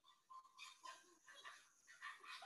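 Faint, short high-pitched calls of primates in a chimpanzee hunt of red colobus monkeys.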